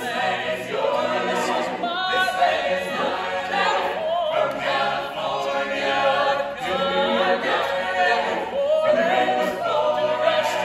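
Mixed men's and women's a cappella ensemble singing in harmony without instruments. A male soloist sings out from the centre over the group, which is under a dome that the singers say enhances their a cappella sound.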